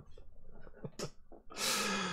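A person breathing out as laughter dies down: faint breaths and a short catch about a second in, then a louder, longer breathy exhale near the end.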